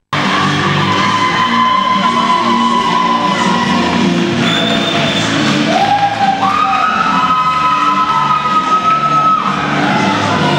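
Music with a melody of long held notes over a dense layered backing, played loud and steady.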